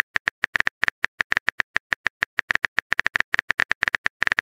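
Rapid simulated phone-keyboard typing clicks from a texting-story app, sounding while the next message is typed out. The clicks are short and sharp, all of the same pitch, and come at an uneven pace of about ten a second.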